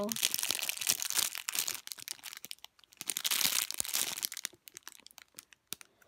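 Clear plastic packaging bag crinkling as a squishy inside it is handled and squeezed, in two spells: about the first two seconds, then again about three seconds in, with scattered faint crackles between and after.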